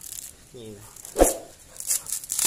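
Dry coconut husk fibres being pulled and torn apart by hand, with a crackly, rustling tearing near the end. A single sharp, loud sound about a second in.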